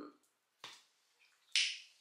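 A single short click about half a second in, then a brief breathy hiss just before speech resumes.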